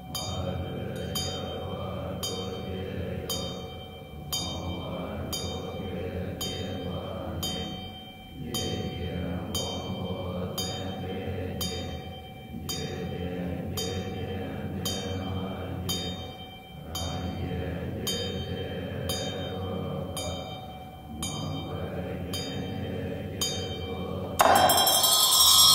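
Tibetan Buddhist monks chant an invocation in low, steady voices. They sing in phrases of about four seconds with short breaks between. Under the chant runs a steady struck beat of about three strokes every two seconds, with a ringing tone held throughout.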